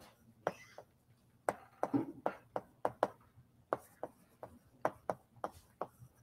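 Chalk writing on a blackboard: a string of sharp, irregular taps and short scratches, about three a second.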